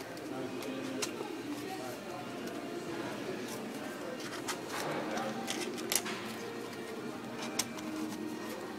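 Thin plastic puzzle-lamp pieces handled and hooked together by hand, with a few sharp clicks as they snap on; the loudest comes about six seconds in. A faint voice murmurs underneath throughout.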